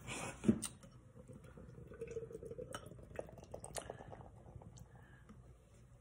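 Beer being poured from a can into a glass: a soft stream of liquid with fizz and small clicks as the glass fills and the head foams up. There is a light knock about half a second in.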